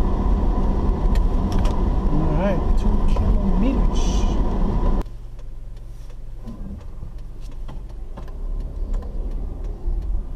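Car driving, heard from inside the cabin: steady engine and road noise that drops abruptly about halfway through. A lower rumble with scattered light clicks and rattles follows as the car runs on a dirt road.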